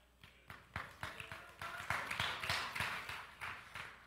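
Faint, irregular taps and clicks, several a second, over a faint hiss.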